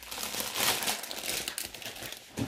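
Thin plastic bread bag crinkling as a packet of brioche burger buns is handled and moved.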